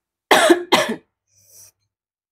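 A woman coughing twice in quick succession into her hand while eating spicy, sour pempek.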